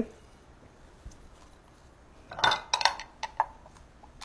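A few light clicks and clinks of a pepper grinder being handled over a cutting board, bunched together a little past halfway.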